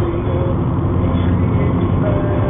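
Steady road and engine noise inside the cabin of a moving car, heavy in the low end.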